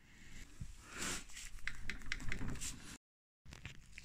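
Close-up handling noise: rustling and light scraping as a welded bracket is turned in the hand, with a few small clicks. It cuts off suddenly near the end.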